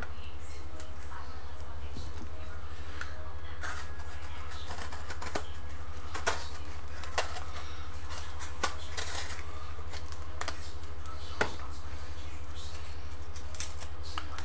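Steady low hum with sparse, irregular sharp ticks and pops as a skillet of shrimp in butter is brought back up to frying heat.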